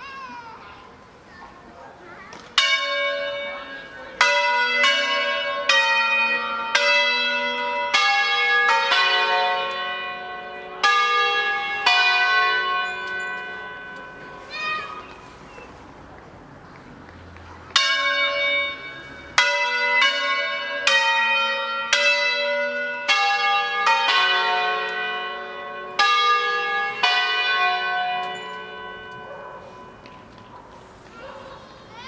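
Peal of five wheel-hung church bells tuned in F#3, cast by Ottolina of Seregno, rung in solemn 'concerto' style: bells struck at different pitches in quick succession, several strikes a second overlapping as they ring. A first run of strikes starts a couple of seconds in and lasts about ten seconds, the bells ring out and fade for a few seconds, then a second run starts and carries on.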